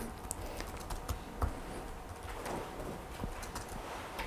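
Typing on a laptop keyboard: irregular, fairly quiet key clicks over room tone.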